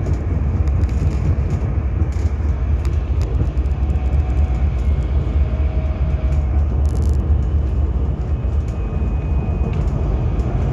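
Steady ride rumble inside a Berlin GT6NU low-floor tram running along the track, the wheels and running gear heard through the car's floor. There is a faint whine in the middle, a click about seven seconds in, and a thin higher whine near the end.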